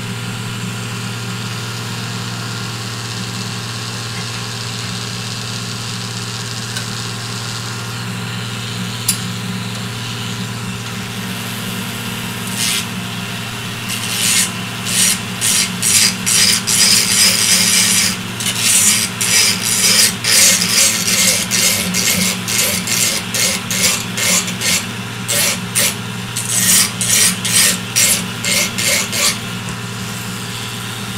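Rapid, rhythmic scraping strokes of a small metal hand tool on a 3D-printed plastic tree part, about two strokes a second, starting about twelve seconds in, pausing briefly, and stopping near the end. A steady low machine hum runs underneath.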